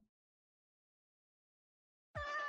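Near silence: a dead-quiet gap with no sound at all, just after a short spoken word fades out at the very start.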